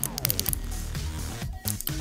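Background music with a steady low beat, with no speech over it.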